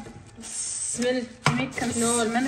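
Thin plastic bags of spices and nuts rustling as they are handled on a countertop, with one sharp knock about a second and a half in as something is set down.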